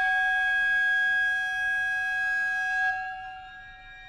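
Wooden recorder holding one long, steady high note over held string tones; the recorder note stops about three seconds in, leaving the quieter strings sustaining.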